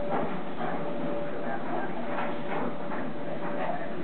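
Small terrier dogs vocalising in a few short bursts as they play together over a toy.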